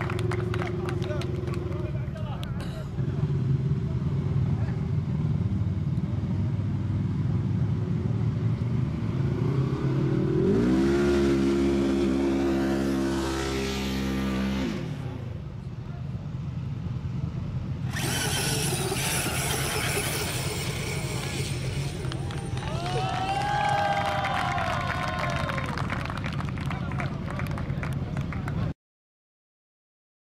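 Outdoor bustle with voices and an engine. About ten seconds in, the engine revs up and holds steady for some four seconds, then drops away.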